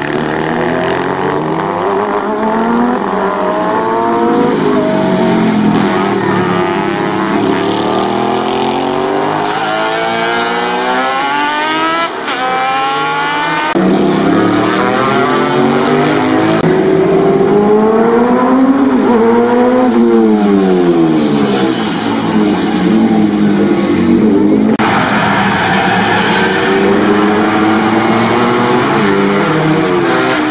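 Racing motorcycle engines revving hard as the bikes accelerate past, the pitch climbing and dropping again and again with each gear change and as the bikes come and go.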